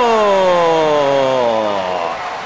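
A football commentator's long drawn-out shout: one held vowel stretched over two seconds, slowly falling in pitch.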